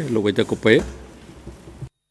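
A man speaking into a desk microphone. The audio cuts off abruptly to dead silence near the end.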